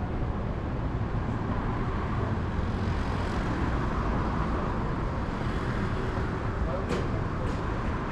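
Steady city traffic noise from a nearby road, with voices of passers-by in the background and a couple of short clicks near the end.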